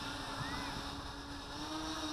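Small homemade quadcopter's motors and propellers humming steadily in flight, heard from the craft itself, the pitch rising slightly near the end.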